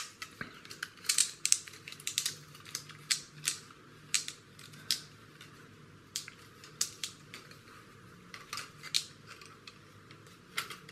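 Plastic model-kit parts and a clear plastic bottle being handled and fitted together: irregular light clicks and taps of hard plastic.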